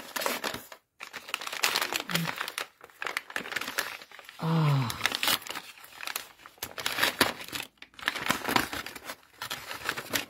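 Gift-wrapping paper being crinkled and torn by hand as a taped present is unwrapped: a continuous run of irregular rustles and short rips.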